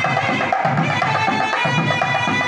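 A nadaswaram-type double-reed pipe playing a sustained, reedy melody over a thavil barrel drum. The drum beats a steady rhythm of deep strokes about twice a second, with sharper taps in between.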